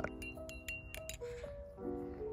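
Lofi background music, with several light metallic clicks from a balisong trainer's handles and blade swinging on their pivots and knocking together as it is flipped, mostly in the first second.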